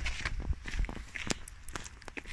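Footsteps walking over dry grass and sandy ground: a run of short, uneven steps, several a second.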